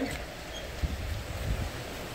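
Two soft low thumps of footsteps, a little under a second apart, passing through a doorway over a steady background hiss.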